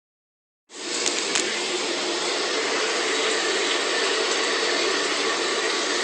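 A shower running: a steady hiss of spraying water that starts under a second in, with two light knocks shortly after it begins.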